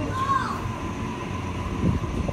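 Double-deck electric suburban train rumbling along the platform at low speed, with a short high squeal just after the start and a thump near the end.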